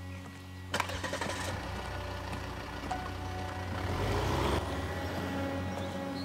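A car door shuts with a sharp thunk, then the car's engine starts and runs, building up in level until it stops suddenly about four and a half seconds in. A steady music bed runs underneath.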